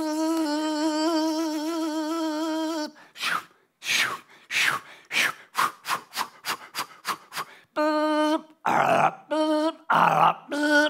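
A man's voice making vocal sound effects: a long held hummed note with a wobble in it, then a run of short breathy hisses that come faster and faster, then short hummed notes alternating with rasping bursts near the end.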